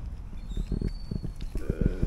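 Pig grazing, tearing and munching grass with a quick run of short low crunches.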